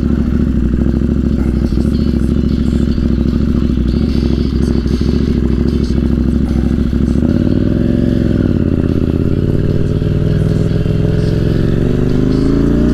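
Motorcycle engine idling steadily, then about seven seconds in the note changes and climbs as the bike pulls away and accelerates, with the pitch rising in steps through the gears.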